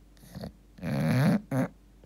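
English bulldog snoring in its sleep: three rough breaths, the longest and loudest about a second in.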